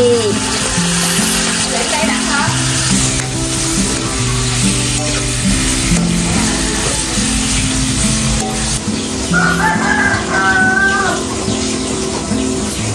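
Pork sizzling as it stir-fries in a wok, under background music with a steady, repeating low melody. A rooster crows once near the end.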